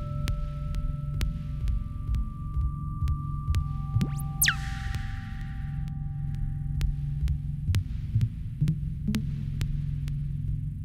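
Minimal electronic music: a dense low throbbing hum under scattered sharp clicks, with held pure tones that step down in pitch one after another. About four seconds in, a fast whistle-like sweep shoots up and falls back, trailing a brief hiss.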